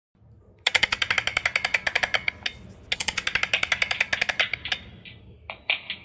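Rapid, even clicking, about a dozen clicks a second, in two runs of about a second and a half each, followed near the end by a few separate short high ringing notes.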